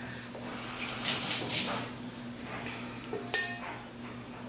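Kitchen tap running as a metal measuring spoon is rinsed under it, then a single sharp clink about three seconds in.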